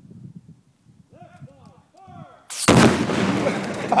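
Detonating-cord breaching charge going off against a plywood wall about two and a half seconds in: one sudden blast that keeps rolling for over a second. Laughter starts near the end.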